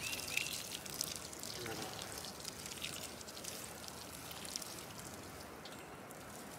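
Water sprinkling from a galvanized metal watering can onto soil around seedlings: a steady trickle and patter that thins out near the end.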